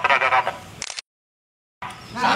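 A man's voice in the opening half second, then the audio cuts out to dead silence for just under a second, an edit gap, before sound comes back near the end.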